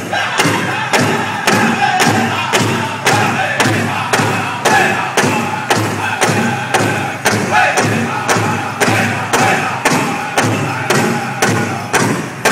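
Powwow drum group drumming and singing: a large drum struck in a steady beat, a little over two strokes a second, under high-pitched group singing.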